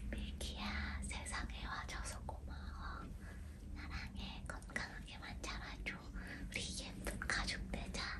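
A woman whispering throughout, over a faint steady low hum.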